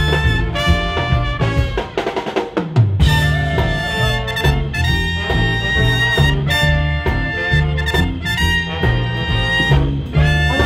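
A live swing band plays an instrumental passage: trumpet and trombone over upright bass and drum kit. About two seconds in, the bass and horns stop for a short snare-drum break. The full band comes back in a second later.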